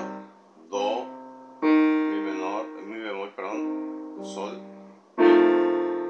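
Electronic keyboard on a piano sound playing chords in B-flat major: three chords struck about a second in, near two seconds and about five seconds in, each held and fading slowly.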